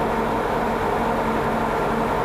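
A heavy engine runs steadily at a constant speed, giving an even, unchanging hum over a wash of machine noise.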